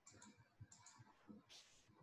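Faint computer mouse clicks: two quick pairs of clicks in the first second, then a short burst of hiss near the end.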